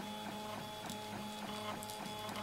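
Stepper motors of a MendelMax RepRap 3D printer whining as the print head moves back and forth during a print. It is a steady hum of several tones that changes briefly about four or five times a second as the moves change direction.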